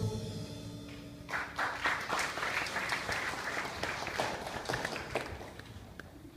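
The last held chord of a choir dies away in the hall, then an audience applauds from about a second in. The clapping thins out and fades near the end.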